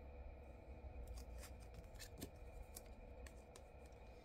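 Faint, irregular light clicks and snaps of tarot cards being handled, over a low steady hum.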